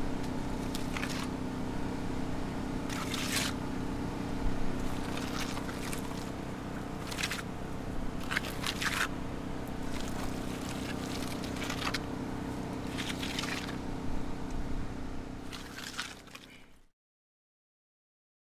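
Hand trowel scraping and spreading wet sand-clay plaster over a compressed earth brick wall in irregular strokes, over a steady hum. The sound fades out near the end.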